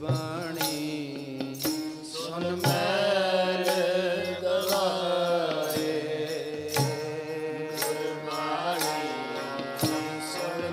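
Sikh devotional kirtan: a voice singing over a harmonium's held chords, with tabla strokes about once a second.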